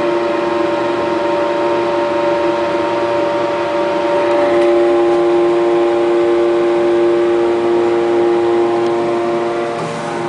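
Steady droning hum of a lift car's exhaust fan, several steady tones held together inside the car of a 1964 Schindler traction lift. The balance of the tones shifts slightly about halfway through.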